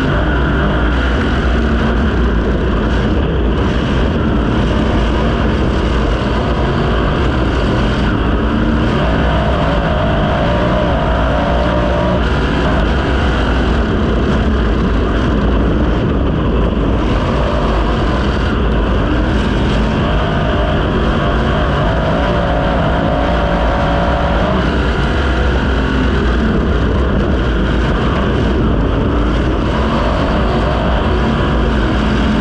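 A non-wing 410 sprint car's V8 engine at racing speed, heard on board from the cockpit. Its pitch rises and falls as the throttle comes on and off through the corners.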